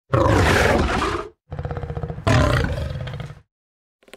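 Dragon roar sound effect: two long, rough roars, the second swelling louder partway through before dying away.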